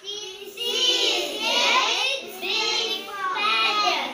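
Young schoolchildren singing together in short phrases, each about a second long with brief breaks between them.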